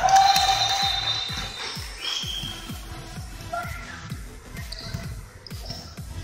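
Pickup basketball game in an echoing gym: a basketball bouncing and shoes on the wooden court, with a loud burst of noise in the first second and music underneath.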